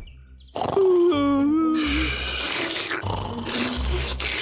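A cartoon bear's sleepy vocal sound: starting about half a second in, a long drawn-out groan slides slightly down in pitch, followed by a rasping breath, with soft music underneath.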